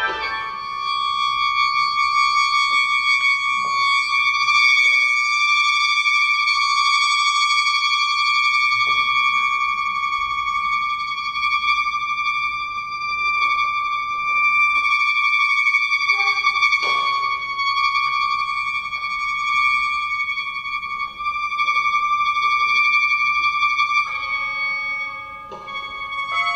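A 37-reed sheng, the Chinese free-reed mouth organ, holds a single long, steady high note. Near the end it moves to a chord of several notes sounded together.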